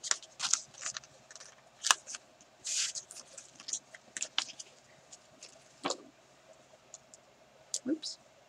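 Paper sticker sheets and packs being handled and shuffled on a desk: an irregular string of short rustles and light taps, with a longer sliding rustle about three seconds in.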